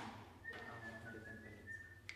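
A person whistling quietly: a short run of high notes that step up and down in pitch, after a short click at the very start.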